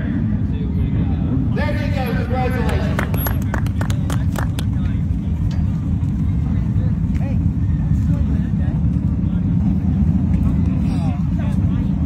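Steady low rumble of race cars running on the dirt track. Faint voices come in briefly about two seconds in, with a few light clicks.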